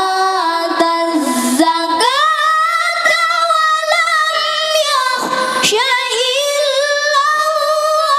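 Two boy qaris reciting the Qur'an in unison into microphones in melodic tilawah style, with long held, ornamented notes. The pitch steps up about two seconds in and stays high.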